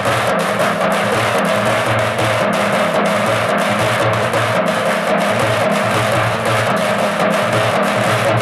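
Three halgi frame drums beaten with sticks together in a fast, steady, unbroken rhythm.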